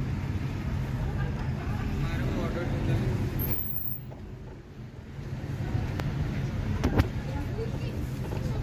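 Low, steady hum of a car moving slowly in traffic, heard from inside the cabin, with faint voices from the street. The sound drops away sharply for about a second around the middle, then returns, and there is a short click near the end.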